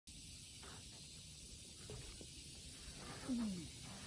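Steady high hiss of outdoor ambience with a few faint knocks from a person moving on a wooden deck, then about three seconds in a short falling grunt from a man as he sits down.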